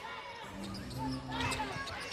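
Basketball dribbled on a hardwood court, bouncing repeatedly.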